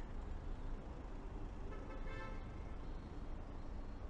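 City street traffic with a steady low rumble, and a short car horn toot about two seconds in.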